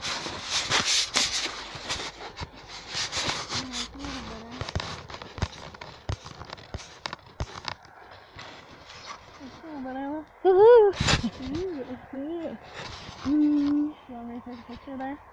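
Rustling and handling noise for the first few seconds as the camera is swung through brush. After that comes a series of short wordless vocal sounds, like murmurs or hums; the loudest is a rising and falling one about two-thirds of the way in.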